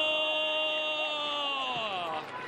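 An Arabic football commentator's long, drawn-out excited cry on one held pitch, sliding down near the end, during a chance in front of goal.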